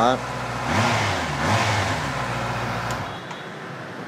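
Honda CB650R's inline-four engine idling through its stock exhaust, running fairly smooth and quiet. It is revved briefly twice about a second in, and the engine drone drops away about three seconds in, as if switched off.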